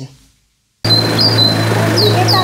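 Outdoor street sound cutting in abruptly about a second in, after a moment of dead silence: a steady low hum with short, high bird chirps that glide downward, repeating about twice a second.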